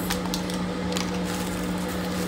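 Instant coffee being stirred in a ceramic mug: a few light clicks and scrapes of the stirrer, over a steady low hum in the room.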